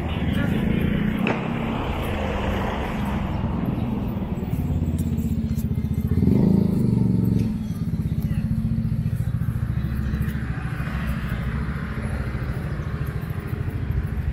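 Street traffic with car and motorcycle engines passing close. A motorcycle is loudest about six to seven seconds in.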